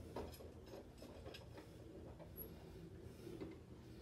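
Faint clicks and rubbing of bar clamps being set and tightened on a glue-up of wood strips in a bending jig, over a low steady room hum.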